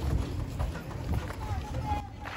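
Outdoor street ambience recorded while walking: a steady low rumble of wind and handling on the microphone, with footsteps and faint voices of people nearby.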